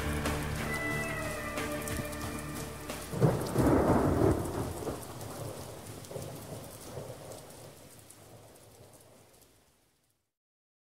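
Rain-and-thunder sound effect closing the song. The last held chord dies away in the first two seconds, a thunderclap rumbles about three seconds in, and the rain fades steadily away.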